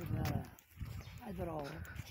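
Quiet voices talking in short bits, about a second apart, over a steady low rumble.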